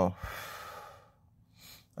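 A man's audible sigh, a breathy exhale of under a second, followed near the end by a short faint intake of breath.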